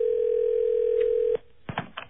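Telephone ringback tone on an outgoing call: one steady, single-pitched ring that cuts off about one and a half seconds in, followed by a few faint clicks as the line is picked up.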